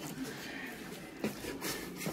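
A metal slotted spoon stirring thick buffalo chicken dip in a slow cooker crock: quiet scraping with a few light clicks.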